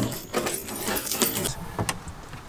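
A bunch of car keys jangling in the hand, with several short light clicks and rattles.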